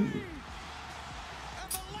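A man's short laugh trailing off at the start, then faint steady background noise, broken by a single sharp click near the end.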